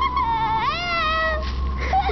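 A girl's high-pitched wailing cries in mock distress, wavering up and down in pitch, with one long cry rising about half a second in and falling away.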